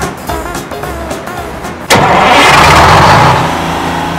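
Background music, then about two seconds in a car engine sound effect starts with a sudden loud rush and settles into a steady low hum.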